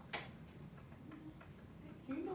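A single sharp tap, a whiteboard marker tapping against the board, just after the start, then quiet room tone with a few faint ticks.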